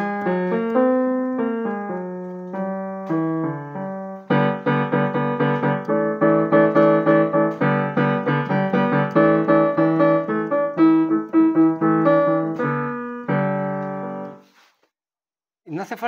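Digital piano played freely: a few slow single notes at first, then from about four seconds in a denser run of repeated notes and chords, ending on a held chord that dies away shortly before the end.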